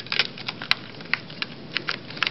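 Small metal tins handled on a desk: a scatter of light clicks and taps of tin and lid knocking together.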